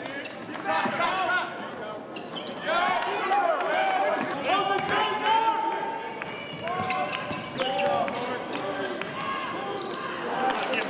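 Basketball game on a hardwood court: many short, high squeaks of sneakers on the floor, one after another, with the sharp thuds of the ball bouncing in between.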